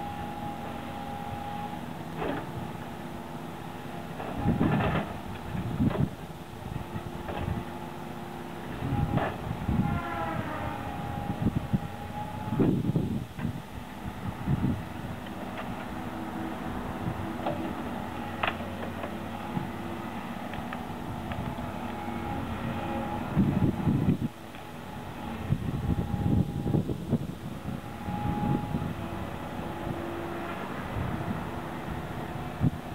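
Doosan log loader at work: its diesel engine and hydraulics run with a steady whine, the pitch dipping and rising about ten seconds in, while logs knock and clunk heavily against the load on the log truck at irregular intervals.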